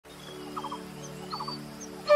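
Quiet music intro: a soft sustained chord held under short bird-like chirps in groups of three, heard twice.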